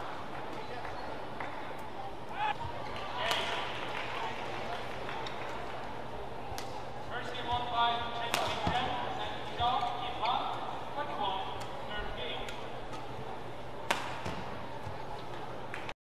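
Badminton match sound: sharp racket hits on the shuttlecock, several seconds apart, over a steady hum of arena background noise.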